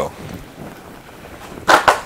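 Faint rustling and handling noise from a cardboard product box being held and turned in the hands, with a short, louder burst of noise near the end.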